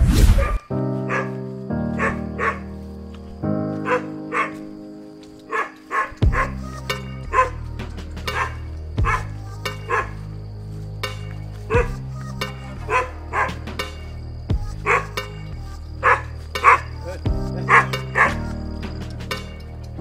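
Background music, with a brief whoosh at the start, and over it a dog barking repeatedly, about one or two barks a second, from about four seconds in.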